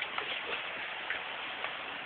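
Steady outdoor background hiss with a few faint, irregular ticks.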